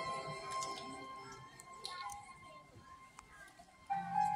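A live symphony orchestra's held chord fading away into a quiet hush, with a few faint clicks, then the orchestra coming in again sharply just before the end.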